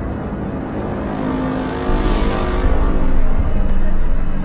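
A loud, noisy low drone that grows louder about two seconds in, with a swishing hiss peaking in the middle and a faint tick about once a second.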